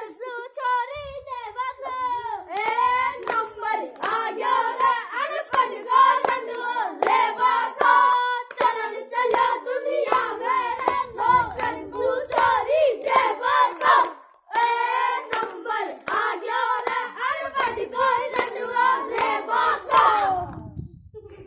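Children singing a sudda dangal folk song in high voices, with hand claps keeping the beat. The singing and clapping break off briefly about two-thirds of the way through, then carry on.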